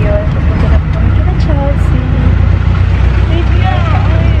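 Steady low rumble of a moving vehicle heard from inside the cabin, with girls' voices talking and laughing over it.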